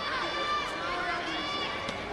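Distant voices calling out and talking in a large sports hall, with a couple of faint knocks.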